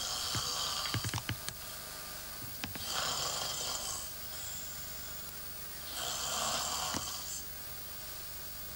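A sleeping man snoring through an open mouth: three long snoring breaths about three seconds apart, with a few light clicks in the first second or so.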